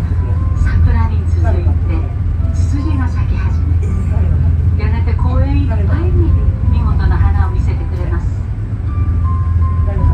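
Steady low hum of the Asukayama Park monorail car running on its track, heard from inside the car, with people's voices over it.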